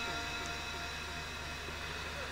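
The echo tail of a Quran reciter's chanted voice, repeating about five times a second and dying away through the sound system's echo effect, over a steady electronic hum and hiss.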